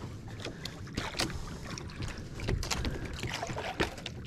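Water lapping against a small outrigger boat's hull with wind on the microphone, and scattered light clicks and rustles as monofilament fishing line is pulled in by hand.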